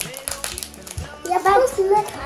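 Soft music with steady, stepping tones and a few light clicks, then a child's voice saying "ja" over it about a second in.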